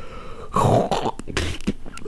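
A man's short breathy throat noise about half a second in, between sentences.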